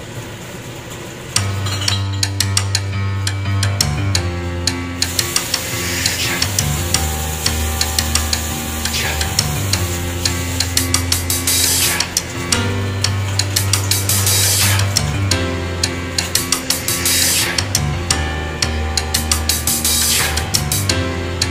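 Background music with a steady drum beat and held bass notes, starting about a second and a half in.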